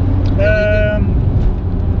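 In-cabin running noise of a VW Bora's tuned 1.9 TDI diesel: a steady low engine and road drone while the car is driven. A man's voice gives a brief drawn-out "uhh" about half a second in.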